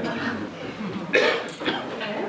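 Indistinct voices in a room, with a short, sharp vocal burst about a second in.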